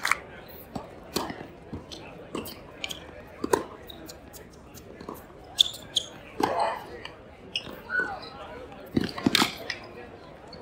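A tennis ball bounced on an indoor hard court about every half second before a serve, then a rally of racket strikes and ball bounces, with several loud hits close together near the end. A brief voice sounds once, mid-rally.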